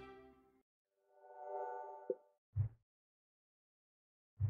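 Background music fades out, then an electronic transition sound effect: a soft chime-like chord swells and fades over about a second, followed by a short low thud.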